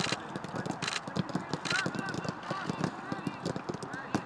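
A football being struck in a quick passing drill, a run of irregular thuds from the kicks, with players' voices calling out around it.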